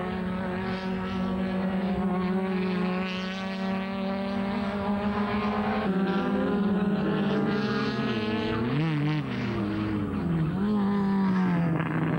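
Touring race car engines running at high revs on track, a steady engine note at first. After a change of shot the engine note of a second car dips and rises several times, then climbs again.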